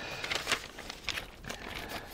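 A freshly cleaned, dry vinyl record being slid into its sleeve: the sleeve rustling, with a few light clicks.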